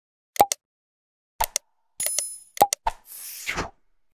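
Subscribe-button animation sound effects: several short pops and clicks, a brief bell-like ding about two seconds in, then a short whoosh near the end.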